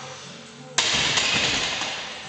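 Loaded barbell racked onto the steel hooks of a bench press stand about a second in: a sudden loud metal clang that rings and fades over about a second, with music playing underneath.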